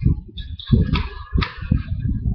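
Handling noise of a plastic airsoft gun as a suppressor is fitted onto its barrel: uneven rubbing and scraping with a few sharp clicks, louder twice near the middle.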